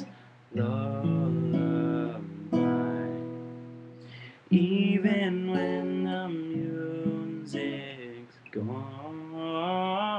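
Acoustic guitar strumming chords, a new chord struck about every two seconds and left to ring out, with a male voice singing long held notes over it.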